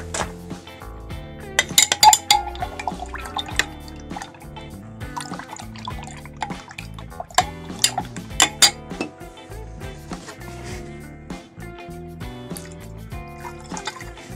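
Glass stirring rod clinking against the side of a glass beaker as a liquid thick with silver chloride precipitate is stirred, over background music. The clinks come irregularly, in clusters about two seconds in and again around eight to nine seconds.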